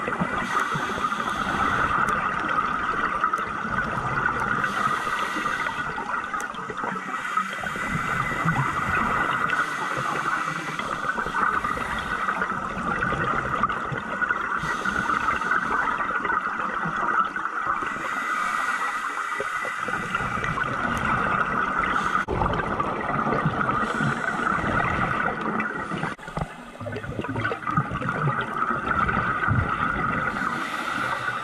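Scuba diver breathing through a regulator underwater: exhaled bubbles gurgling in surges every few seconds over a steady muffled rush, heard through the camera's waterproof housing.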